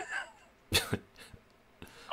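A man's laugh trailing off, then one short, sharp cough about three-quarters of a second in, with a few faint breathy sounds after it.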